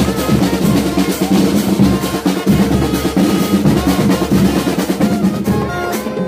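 Marching band playing: snare and bass drums keep up fast rolls and strokes under trumpets and trombones carrying the melody. In the last half second the drumming thins and the brass comes forward.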